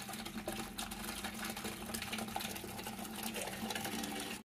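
Tap water pouring in a thin stream into a plastic bucket, a steady patter of small splashes over a low steady hum.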